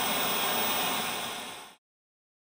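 Television static sound effect, a steady hiss of white noise, that fades out and stops shortly before the end.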